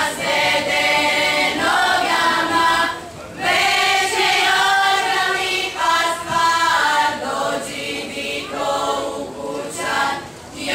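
A folklore ensemble's voices singing together as a choir in long held phrases, with a brief break about three seconds in.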